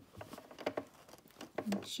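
Soft rustling and light scattered taps of twill fabric being shifted and smoothed by hand under a sewing machine's presser foot, with the machine not running.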